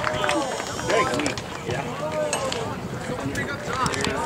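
Indistinct voices of several people talking and calling out, overlapping, with no clear words.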